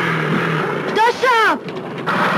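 Motorcycle engine revving briefly, its pitch rising and then falling about a second in.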